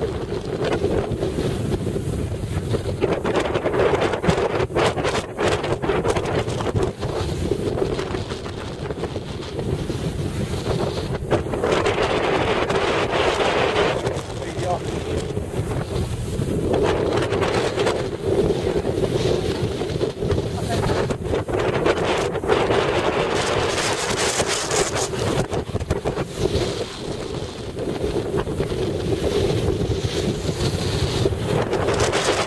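Strong wind buffeting the microphone: a continuous rushing roar that swells and eases in gusts, loudest in several spells a few seconds long.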